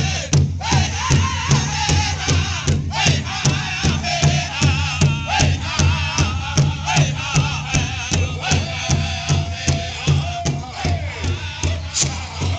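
Powwow drum group singing a veteran song in unison over one large shared drum, the men striking it together with drumsticks in a steady beat of about three strokes a second while their voices rise and fall above it.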